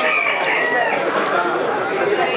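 A rooster crowing, one drawn-out call that ends with a falling tail about a second in, over background chatter of people.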